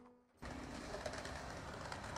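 Music trailing off into a moment of silence, then the steady, faint hiss of outdoor background noise from about half a second in.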